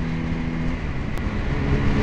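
Motorcycle running at steady freeway speed, its engine drone mixed with rushing wind and road noise.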